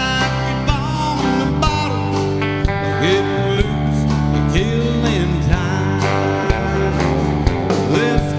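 Live country band: a male lead vocal over electric guitar, keyboards and bass, with a steady beat about once a second.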